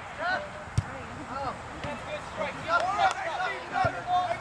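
Soccer players shouting short calls to each other during play, with two sharp thuds of the ball being kicked, about a second in and again near the end.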